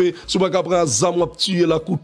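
A man's voice over music with a steady low beat, a thump about three times a second.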